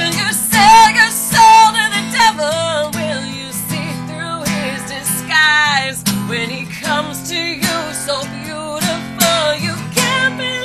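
A woman singing to her own strummed acoustic guitar, with long wavering held notes near the start and again about halfway through.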